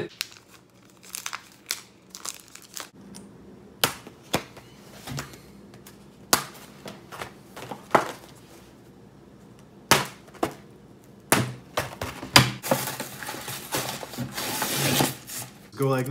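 Clear plastic packaging of a new shower curtain and its rings being handled and opened, with scattered sharp crinkles and clicks, then a few seconds of continuous crinkling near the end.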